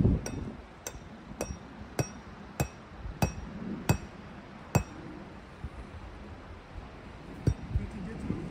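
A metal tent stake being hammered into the ground: a run of about seven sharp strikes roughly every half-second to second, each with a short bright metallic ring, then two more strikes near the end.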